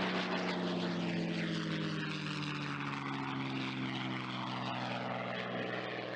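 North American P-51D Mustang's Packard Merlin V-12 engine and propeller droning steadily in flight, the pitch sinking slowly.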